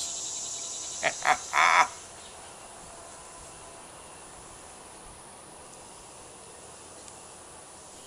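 Three short bursts of a man's voice about a second in, an exclamation in reaction to the strong cigar. After that, quiet outdoor backyard air with faint insects chirping.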